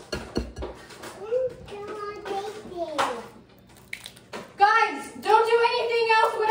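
Girls' voices, ending in a long, drawn-out vocal sound over the last second and a half, with a low knock at the very start and a few small clicks.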